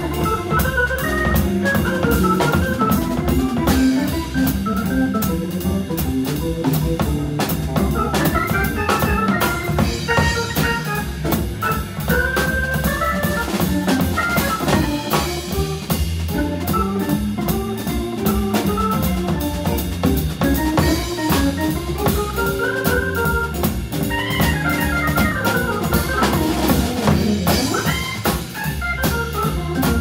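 A Hammond B3 organ plays a fast jazz line of quick runs that climb and fall, over steady low bass notes. A drum kit keeps time behind it with cymbals and snare.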